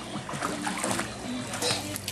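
Water splashing as a small child kicks and paddles through a swimming pool, with faint music in the background.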